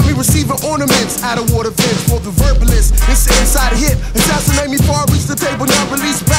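Hip hop track playing: a rapper's voice over a drum beat with heavy bass.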